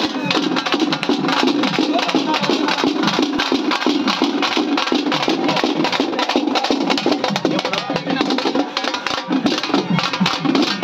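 A group of slung barrel drums beaten with sticks in a steady, dense, driving rhythm, with sharp stick clicks among the drum strokes.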